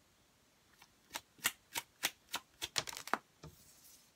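A tarot deck being shuffled in the hands: a run of about ten sharp card snaps starting about a second in, coming faster toward the end, then a brief softer rustle.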